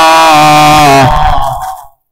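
A man chanting Arabic through a microphone and loudspeakers, holding one long note at the end of a phrase. It stops about a second in and dies away in a reverberant tail, ending in a moment of silence.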